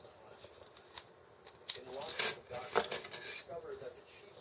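Small plastic model kit parts being handled and fitted: a scattering of light plastic clicks and rustles, with some mumbled voice in the middle.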